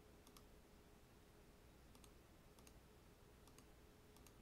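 A few faint, sharp computer mouse clicks, some in quick pairs, over near-silent room tone.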